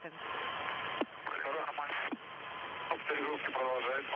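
Soyuz air-to-ground radio link: a steady hiss with short stretches of speech, about a second in and again near the end.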